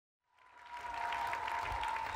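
Concert audience applauding, fading in about half a second in, with a steady high tone held underneath.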